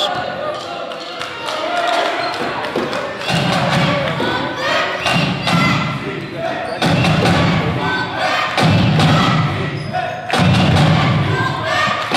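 A basketball being dribbled on a hardwood gym floor, a run of repeated thuds, over the chatter of a crowd in the gym.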